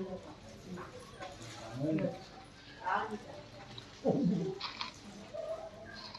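Scattered human voices: a few short words and exclamations, the loudest about four seconds in falling in pitch.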